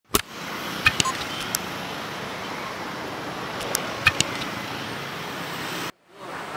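Steady road traffic noise, with a motor scooter passing close by. A few sharp clicks stand out, and the sound cuts off suddenly near the end.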